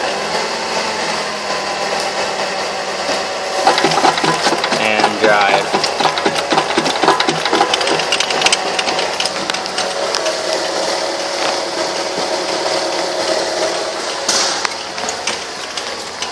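2010 Mazda 3's 2.5-litre four-cylinder engine running with the automatic in reverse, the driven left front axle spinning loose where it has been ripped out of the hub, with a rapid steady mechanical clatter.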